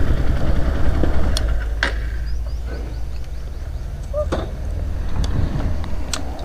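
Motorcycle engine running at low speed as the bike rolls slowly over dirt and pulls up to park: a steady low rumble with a few short sharp clicks.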